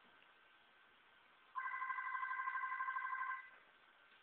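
Electronic telephone ringer warbling in one ring of about two seconds, starting about a second and a half in: an incoming call.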